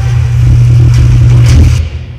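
A loud, low rumble that overloads the recording and cuts off shortly before the end.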